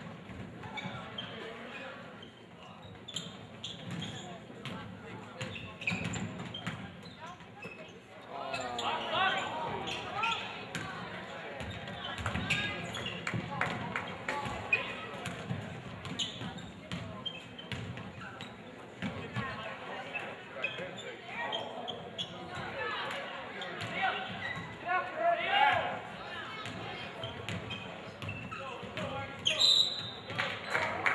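A basketball being dribbled and bouncing on a hardwood gym floor during play, with players' and spectators' voices calling out throughout and livelier from about eight seconds in.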